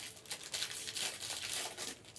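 Irregular crinkling and rustling of something being handled, as of plastic packaging.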